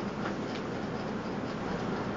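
Steady hiss from a Kuhn Rikon Duromatic pressure cooker held at pressure on a low gas flame.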